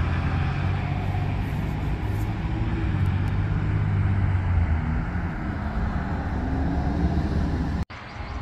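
Steady road traffic noise: a low rumble of passing cars, which cuts out abruptly near the end.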